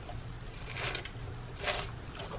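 A person drinking iced coffee from a plastic cup: two short, soft sips, about a second in and again near the end, over a faint steady low hum.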